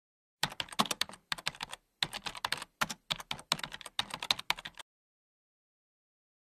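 Computer keyboard typing: quick key clicks in uneven bursts, starting about half a second in and stopping a second before the end.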